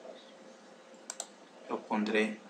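Two quick computer clicks, about a tenth of a second apart, over faint steady room noise.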